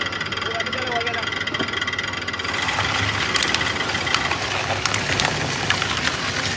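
Twin-shaft tire cord fabric shredder running with a steady machine whine. About two and a half seconds in, a louder crunching, crackling noise with sharp clicks joins in as rubberised tire cord fabric is torn between the cutters.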